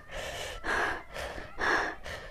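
A woman breathing hard through her mouth, about four quick noisy breaths, suffering the burning heat of a Jolo chip, an extremely hot chili chip.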